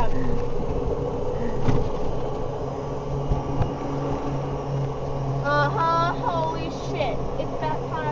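Golf cart driving along: a steady low hum with the rumble of the ride over the ground. A person's voice sounds briefly about five and a half seconds in and again near the end.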